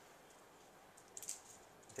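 Small plastic dice clicking together as a hand scoops several of them off a cloth gaming mat, in a short cluster of light clicks about a second in.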